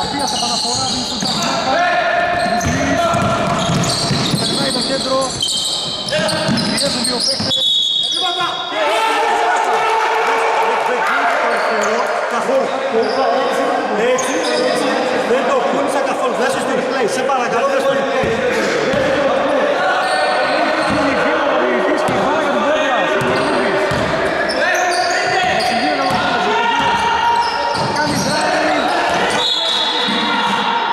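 Basketball being dribbled and bounced on a wooden indoor court, with players' voices calling out throughout, echoing in a large gym hall.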